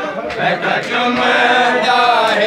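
Crowd of men chanting together loudly, many voices overlapping: a Shia azadari mourning chant.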